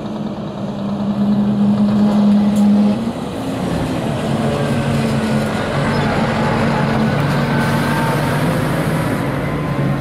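Heavy diesel truck engines running as big tractor-trailers drive slowly past. A Scania 124L 440 goes by close, with its engine drone loudest in the first three seconds. A second truck's diesel engine then carries on as it approaches.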